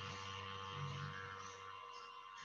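A pause in speech: faint steady electrical hum over low background hiss.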